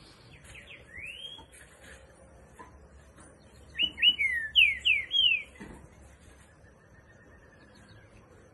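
Green-winged saltator (trinca-ferro) singing: a soft slurred whistle about a second in, then a loud phrase of about six quick slurred whistled notes around the middle. Faint high chirps of other birds run underneath.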